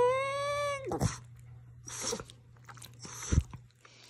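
Boston terrier howling: one long drawn-out note that rises slowly in pitch and breaks off about a second in. It is followed by three short, quieter noisy bursts.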